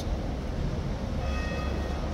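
Street traffic, led by a red double-decker bus driving past: a steady low engine rumble, with a faint high whine briefly in the second half.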